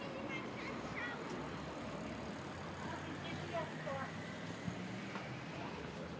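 Town street ambience: passers-by talking in the background, and a vehicle engine humming past around the middle.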